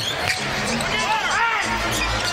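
A basketball being dribbled on a hardwood arena court, with arena music playing underneath.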